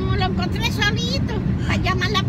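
Talking over the steady low rumble of a car driving, heard inside the cabin.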